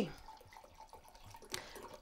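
Brandy being poured from a bottle into chocolate syrup: a faint liquid trickle, with a small click near the end.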